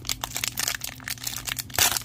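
Foil wrapper of a trading-card pack crinkling and tearing as it is pulled open by hand: a run of quick crackles, with a louder crackle near the end.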